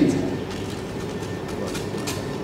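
Steady, even background rumble of the hall's room noise, with no distinct event in it. A last word trails off just at the start.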